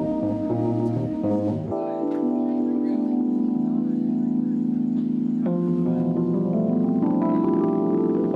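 Electric organ playing long sustained chords. A low bass line moves under the chord for the first couple of seconds, then the chord changes and is held, moving to a new chord about halfway through.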